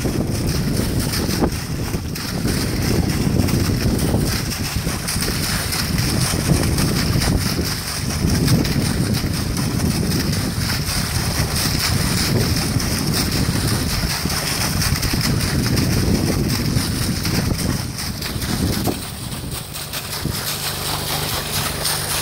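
Air-lift well drilling: compressed air driving a 2-inch drill stem's discharge, a sandy water slurry gushing out of the pipe into the mud pit in surges every few seconds. Wind buffets the microphone throughout.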